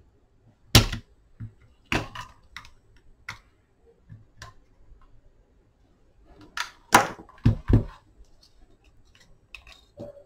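A spring-loaded desoldering pump and small hand tools clicking and knocking on a workbench. The sharp clicks come at irregular intervals, with a loud one about a second in and a close cluster around seven seconds.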